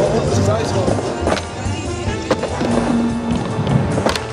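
Music playing over a skateboard riding a wooden vert ramp. Several sharp clacks come from the board hitting the ramp, about a second and a half in, a second later, and again near the end.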